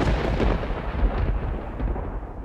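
A deep, thunder-like rumble from a dramatic sound effect in the soundtrack. It swells in just before and carries on steadily and loud.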